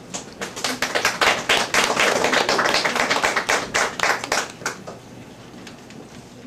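A small audience clapping for about four and a half seconds, the individual claps distinct, then dying away.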